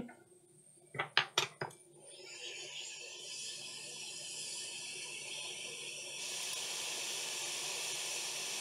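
Hot air rework gun blowing a steady hiss onto a laptop motherboard to desolder a shorted capacitor, the air noise stepping up about three seconds in and again near six seconds. A few light clicks come about a second in, before the air starts.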